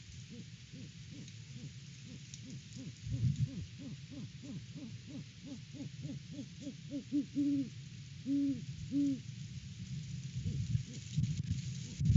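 Great horned owl hooting: a quick run of short low hoots at about three a second, then two longer, stronger hoots near the end. Wind rumbles on the microphone underneath.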